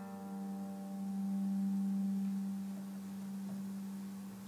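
Chamber ensemble of strings, winds and harp holding a last low note that rings on, swelling slightly before fading away near the end.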